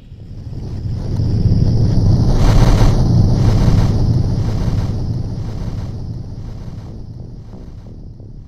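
A deep, rushing, wind-like whoosh swells up over the first two to three seconds, then slowly dies away.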